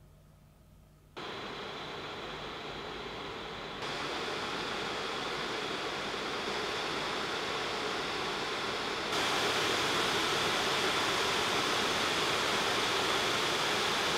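Alienware m18 R2 gaming laptop's cooling fans, silent at idle and then under load in successively higher performance modes. Near silence for about the first second, then a steady fan whoosh that jumps louder in three steps, about a second, four seconds and nine seconds in. The last step is the fans maxed out and quite loud.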